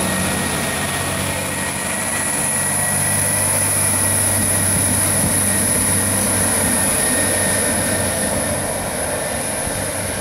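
Irish Rail 22000 class diesel multiple unit pulling out of the station, with a steady low hum from its underfloor diesel engines as the carriages pass close by. The sound fades over the last couple of seconds as the rear cab draws away.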